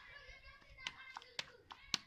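Faint background voices chattering, cut through by four sharp slaps or claps at uneven intervals of about a third to half a second; the last, near the end, is the loudest.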